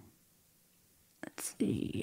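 A pause in speech: near silence for about a second, then a short breathy sound and a voice starting to speak again near the end.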